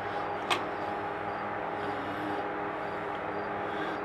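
Steady room hum made of several steady tones, with one sharp click about half a second in.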